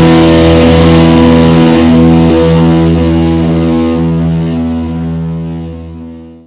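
The last chord of a black metal song: a distorted electric guitar chord held and ringing out without drums, slowly fading away toward the end.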